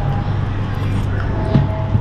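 Steady low background rumble, with a short crunch or two near the end as a bite is taken of crunchy laping close to the microphone.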